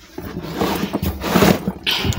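Rustling and dull bumps of bags being moved about by hand close to the phone's microphone.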